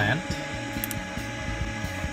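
Steady low hum of the powered-up cockpit avionics, with a single faint click about a second in.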